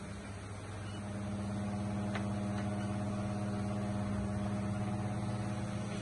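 A steady machine hum at an unchanging pitch, with a couple of faint ticks.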